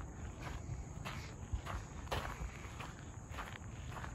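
Footsteps on a gravel path, about two steps a second, soft against a faint outdoor background.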